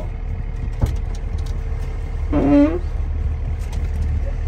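Tata Prima 5530 truck's diesel engine idling with a steady low rumble, heard from inside the cab. A click comes just under a second in, and a brief voice about halfway through.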